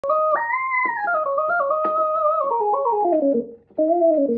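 Roland Juno-DS synthesizer playing a melody of held notes on a sustained lead sound: the line rises near the start, then steps down in pitch, with a brief break shortly before the end before the notes pick up again.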